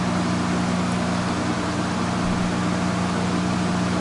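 Steady low machine hum with an even hiss behind it, unchanging throughout, with no other event.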